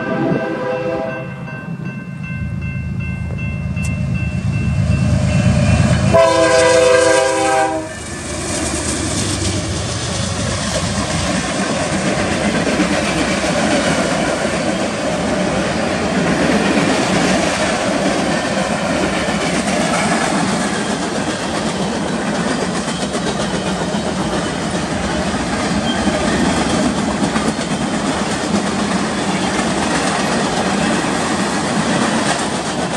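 A BNSF freight train led by three GE diesel locomotives (an ES44DC and two Dash 9-44CWs) passes a grade crossing. Its air horn sounds at the start, the locomotives' engine rumble grows louder, and a second horn blast comes about six seconds in. Then comes the steady rumble and clatter of the freight cars' wheels rolling by on the rails.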